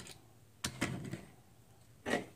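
Light clicks from small objects being handled and set down on a tabletop, two quick ones about two-thirds of a second in, then only low room noise.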